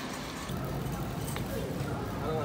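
Shopping cart rolling along a store floor under a steady background hum of the store, with faint, indistinct voices near the end.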